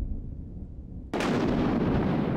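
A low rumble, then a sudden loud boom about a second in that dies away slowly: an explosion-like blast.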